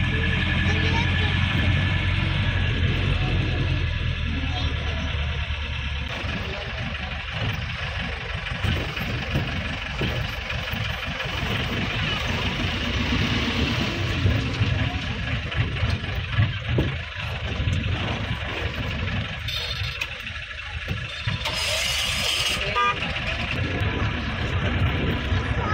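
Inside a moving vehicle on an unpaved dirt road: engine hum and road rumble with irregular thuds and rattles from the rough surface. A steady low drone fades after about six seconds, and horns from nearby traffic sound now and then.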